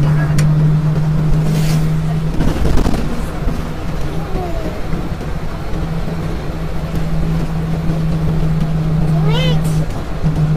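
Bus engine running with a steady low hum and road rumble inside the passenger cabin. A short rising child's vocal sound comes near the end.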